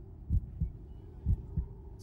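Low double thuds like a heartbeat, one pair about every second, in the show's soundtrack, a tension pulse with no other sound over it.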